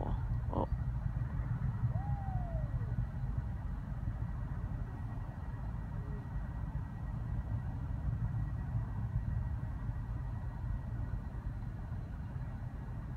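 Distant Falcon 9 rocket's engine noise heard from miles away as a steady low rumble.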